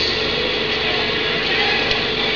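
Steady crowd noise from a large arena audience, with no single loud event.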